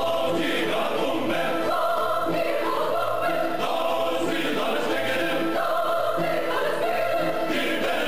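A choir singing over orchestral music, with a regular low pulse in the accompaniment.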